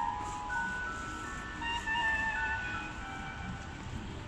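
Clock tower puppet-show music: a slow melody of high, held notes, one note following another with no break.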